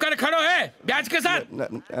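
A man speaking in a wavering, quavering voice, with short phrases broken by brief pauses.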